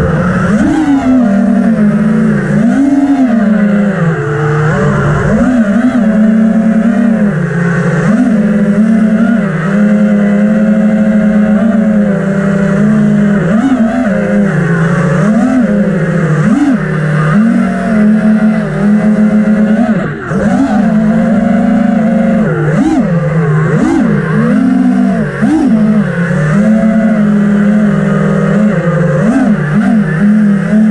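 FPV racing quadcopter's brushless motors and propellers buzzing, the pitch rising and falling quickly and often with the throttle.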